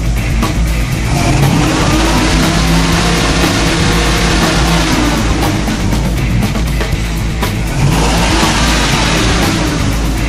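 1970 Ford Mustang Boss 302 V8 revving under load on a chassis dyno. The engine note climbs and falls over several seconds, then climbs again near the end.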